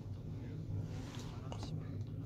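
Faint speech of a man in the background under a steady low hum, in a pause of the louder foreground voice.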